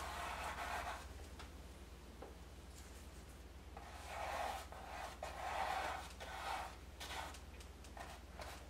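Small paintbrush loaded with oil paint stroking across a stretched canvas: faint soft swishes near the start and again several times from about four seconds in, over a low steady hum.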